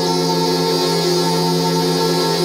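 Electronic improvised music from modular synthesizers and effects-processed voice: a dense drone of steady held tones.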